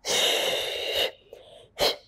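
A woman's forceful audible exhale through the mouth, about a second long, as she works through a Pilates double leg kick, followed by a short, sharp intake of breath near the end.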